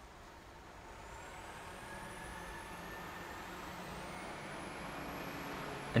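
Faint road traffic, a vehicle's engine, growing gradually louder, with a thin whine slowly rising in pitch.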